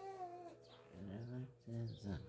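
Faint, murmured speech from an elderly woman softly saying a blessing, in a few short quiet phrases.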